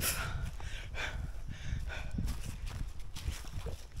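Hiker's footsteps on a rocky trail during a steep climb, over a steady low rumble of wind on the microphone.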